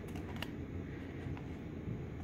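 Faint handling rustle of a paper cup being turned in the hands over low room noise, with one light tick about half a second in.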